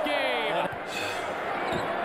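Basketball game broadcast audio: a ball being dribbled on a hardwood court under arena crowd noise. A man's voice trails off with a falling pitch in the first moment.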